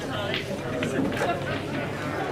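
Indistinct chatter of people talking in a large hall, with no one voice clear.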